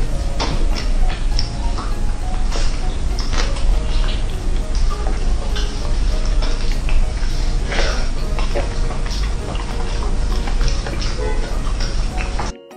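Roast chicken being pulled apart by hands in plastic gloves: many short crackles and tearing sounds from the crisp skin and meat, over background music.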